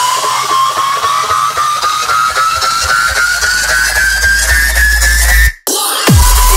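Dubstep build-up. A synth riser climbs steadily in pitch over a hiss of noise, and a deep bass swells in underneath during the second half. Near the end everything cuts off suddenly for a moment.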